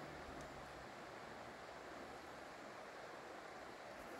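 Faint, steady background hiss of outdoor ambience with no distinct sound events.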